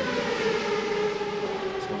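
A racing motorcycle engine at high revs: one steady high note that drops a little in pitch at the start and then keeps sliding slowly lower, as a bike going past does.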